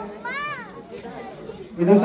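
A short, high-pitched vocal cry that rises and then falls in pitch, lasting about half a second, followed by low crowd chatter.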